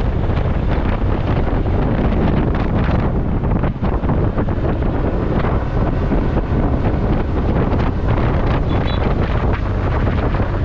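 Wind rushing and buffeting over a camera microphone on a moving motorcycle at road speed, loud and steady, masking most of the motorcycle's own running sound.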